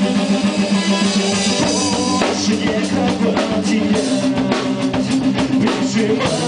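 A band playing rock on a drum kit and guitar, loud and steady, with the drums keeping time under sustained guitar chords that change a couple of times.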